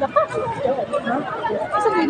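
People talking: several voices chatting close by.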